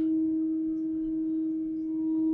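Steady single pure tone from two loudspeakers fed the same signal in a two-source interference demonstration, ringing in an echoey lecture hall. Its loudness sags slightly near the end as one speaker is moved, the intensity changing with position between interference maxima and minima.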